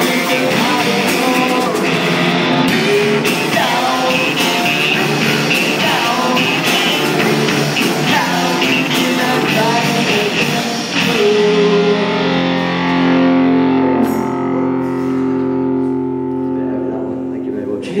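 Live rock band (electric guitar, bass guitar, drums and male lead vocal) playing the closing bars of a song, then a final chord held and ringing out for the last several seconds while the cymbals fade.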